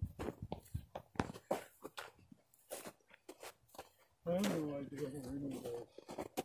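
Footsteps crunching on snow-covered ground, a few steps a second, followed by a man's voice talking in the last two seconds.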